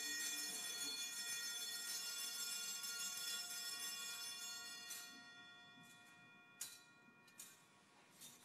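An altar bell rung at the elevation of the chalice. It gives a bright, many-toned ring that slowly dies away, and a couple of faint knocks follow near the end.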